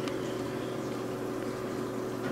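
Steady mechanical hum with a few fixed tones, and one faint click right at the start.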